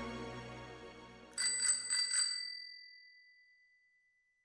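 The last of the music fades out. About a second and a half in, a bicycle bell rings about three times in quick succession, and its ringing dies away.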